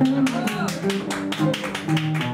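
Jazz combo music: an archtop guitar strumming chords in a steady beat, about five strokes a second, with an upright bass plucking a walking line underneath.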